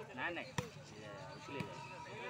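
A volleyball being struck by players' hands in a rally: one sharp slap about half a second in and a fainter one about a second later.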